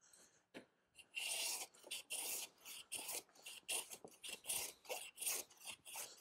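A No. 5 bench plane taking quick, light strokes across a glued-up cherry panel, a faint shaving hiss about two or three times a second, starting about a second in. The plane is flattening the glue-up, knocking down strips that stand high.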